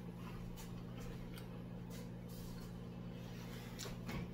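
A steady low hum, with faint scattered clicks and rustles from a hand rummaging in a plastic jar of cheese balls.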